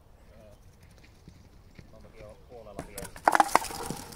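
A thrown wooden kyykkä bat (karttu) strikes the hard pitch and the wooden pins: a quick burst of loud wooden knocks and clatter near the end, after faint voices.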